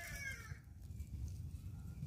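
Faint outdoor ambience with a distant chicken clucking briefly about the first half-second, then only a low steady background hush.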